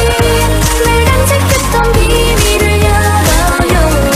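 Korean pop song: a solo female voice singing over an electronic pop backing with a steady beat and bass.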